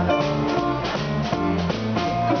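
Live blues band playing an instrumental stretch between sung lines: a run of electric bass notes under electric guitar, keyboard and drum kit keeping a steady swing beat.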